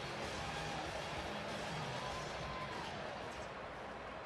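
Steady background noise of a baseball stadium crowd, with faint music under it.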